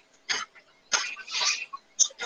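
A man's short coughs and throat clearing, about three brief bursts with pauses between.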